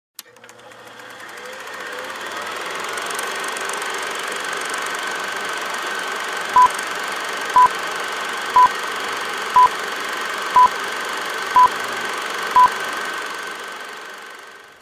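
Vintage film-projector sound effect: a steady whirring rattle and hiss that fades in and out, under seven short, loud beeps one second apart, one for each number of a film-leader countdown.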